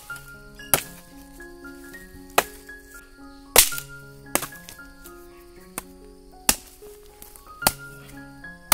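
A blade chopping at a dry wooden stick: about seven sharp cracking strikes at uneven intervals, the loudest near the middle, over background music with soft held notes.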